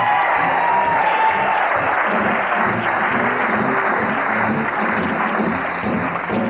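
Studio audience applauding and cheering, with music playing underneath.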